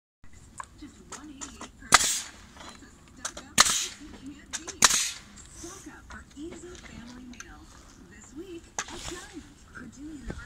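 Pneumatic framing nailer driving nails into a timber plate: three loud sharp shots over about three seconds, each followed by a short hiss of exhaust air, then a lighter snap near the end.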